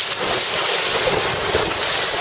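Choppy river water rushing and splashing right at the microphone, with wind noise on the microphone; a loud, steady wash of noise.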